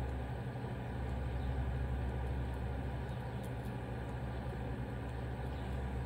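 Steady low background hum with a faint hiss, unchanging throughout.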